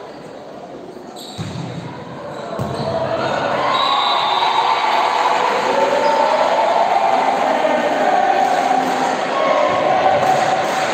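A volleyball is hit about a second and a half in. Then many voices shouting and cheering rise and stay loud through a rally in an echoing sports hall.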